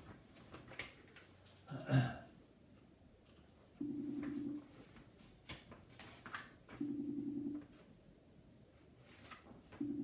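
A phone buzzing three times, each buzz under a second long and about three seconds apart, most likely a mobile phone vibrating against the desk. Between the buzzes comes the rustle and flip of old magazine pages being turned.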